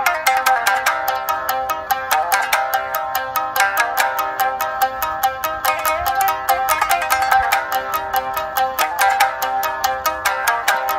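Three shamisen played together, their strings struck with plectrums in a fast, steady run of bright, twangy notes.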